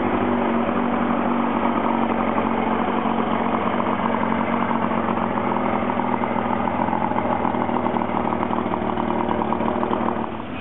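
Yamaha 115 hp outboard motor running steadily at idle with its cowling off, on a test stand.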